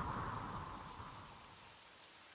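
A soft, even rushing noise, like rain or wind, fading out over two seconds.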